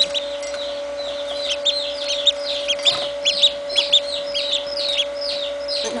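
Domestic duckling peeping: a fast run of short, high-pitched peeps, each falling in pitch, several a second, over a steady hum.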